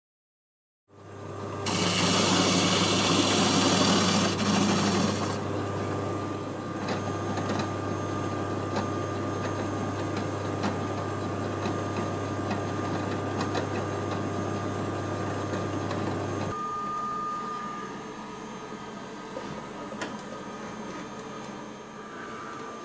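A spindle sander starts about a second in with a steady hum. For the next few seconds a walnut board is pressed against the spinning sanding drum, giving a loud grinding hiss, then lighter sanding continues over the hum. About three-quarters of the way through the hum stops, leaving a quieter steady noise with a thin whistle.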